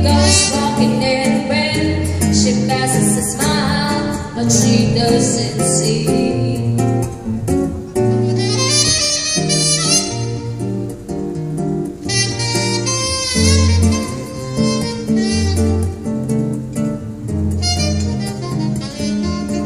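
Live bossa nova instrumental break: a saxophone plays the melody over a nylon-string acoustic guitar accompaniment with a steady, repeating bass line.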